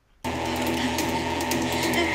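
The episode's sound track playing: a steady drone of several held tones that starts suddenly about a quarter second in.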